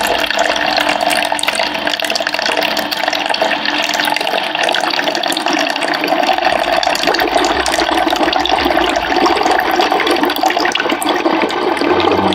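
Water streaming steadily from a countertop reverse osmosis dispenser's spout into a measuring cup, as the unit flushes out its storage tank.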